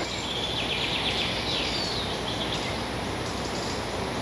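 Outdoor forest ambience: a steady background hiss, with a faint bird singing a short run of high notes in the first half.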